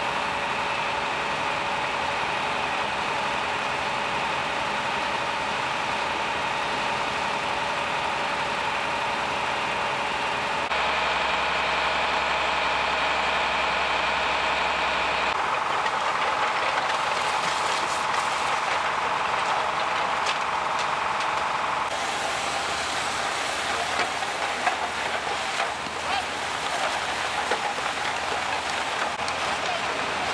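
Fire engines running at a fire scene: a steady engine and pump hum with a held whine, changing abruptly several times as the shot changes. The last third carries scattered crackles and ticks over the hum.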